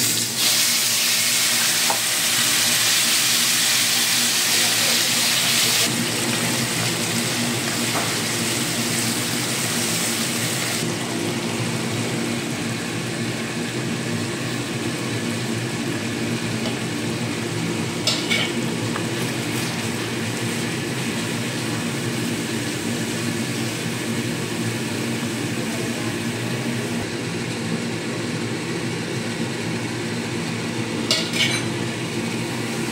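Wet ground spice paste sizzling loudly as it hits hot oil in a wok, easing after a few seconds and again a few seconds later into a steady, quieter sizzle as the masala fries. A few brief knocks are heard along the way.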